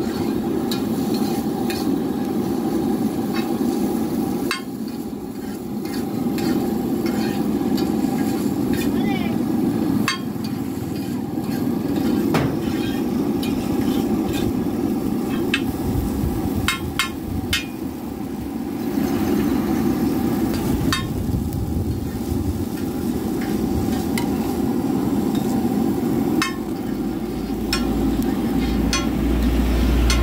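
Metal spatula scraping and tapping on a large flat iron griddle as chow mein noodles and egg are stir-fried, with irregular sharp clinks over a steady frying noise. A deeper rumble comes in near the end.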